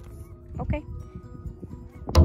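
Soft ringing of a playground metal-bar xylophone struck lightly with a mallet, with a brief squeaky child's vocal sound about two-thirds of a second in.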